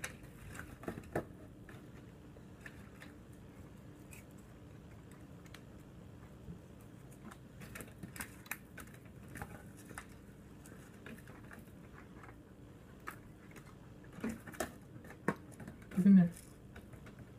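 Faint, scattered little ticks and taps of salt being sprinkled from up high onto beets in a foil roasting pan, with a few stronger taps near the end.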